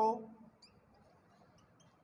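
Faint short squeaks of a marker writing on a whiteboard, after a man's voice trails off at the start.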